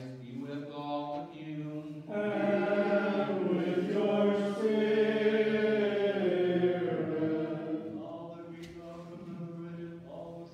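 Byzantine liturgical chant sung by voices in unison. It is quieter at first; about two seconds in, a louder, fuller sung response begins, and it eases off toward the end.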